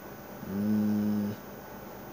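A man's low closed-mouth "mmm" held at one steady pitch for about a second, then cut off abruptly.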